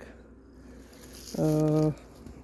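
A woman's voice holding one drawn-out syllable in the second half, after about a second of quiet with only a faint low rumble.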